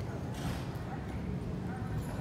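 Airport terminal ambience: a steady low hum with indistinct background voices of travellers, and a brief clatter about half a second in.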